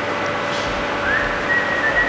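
Someone whistling: a high note that glides up about a second in and is then held, over a steady background hum.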